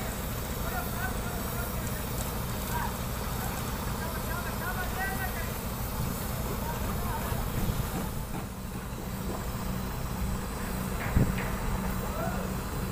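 Concrete transit mixer truck's diesel engine running steadily while it discharges concrete, with workers' voices calling faintly and one sharp knock near the end.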